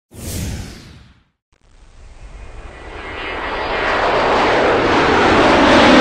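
Intro sound effects: a short whoosh that falls in pitch and fades, a brief silence, then a noise riser that swells steadily louder and cuts off suddenly.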